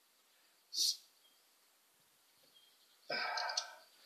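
A beer bottle cap being opened, with a short sharp hiss of escaping gas about a second in. Near the end comes a brief wordless vocal sound from the man.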